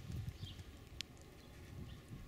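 Wind buffeting the microphone outdoors: uneven low gusty rumbles that ease off in the second half, with a single sharp tick about a second in.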